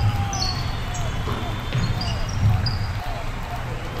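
Basketball bouncing on a wooden gym floor during play, with short high squeaks of sneakers and players' voices.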